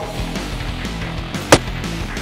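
Background guitar rock music with one sharp, loud bang about one and a half seconds in: a cartoon impact sound effect for two rams clashing heads.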